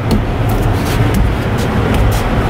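A steady low rumble from a nearby heavy vehicle engine, with a few faint clicks.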